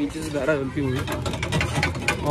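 A person's voice, then a rapid run of sharp clicks, about ten a second, in the second half.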